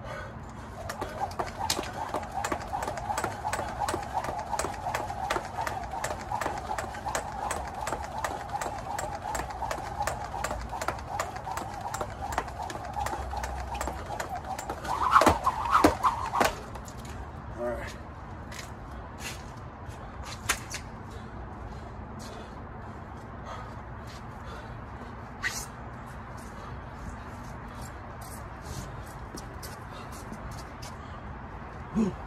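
Speed jump rope turning fast, its cable whirring and slapping the rubber mat in a quick, even rhythm with light foot landings. The rhythm stops suddenly about sixteen seconds in, just after a short louder burst. Only a few scattered light clicks follow.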